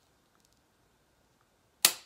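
Hyaluron pen (needle-free filler injector) firing once near the end: a single sharp, spring-loaded snap as it shoots filler into the jawline skin.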